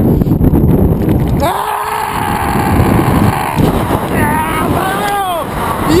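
Wind buffeting a GoPro action camera's microphone for about the first second and a half, then a person's drawn-out wordless voice, one long held sound followed by sounds that rise and fall in pitch.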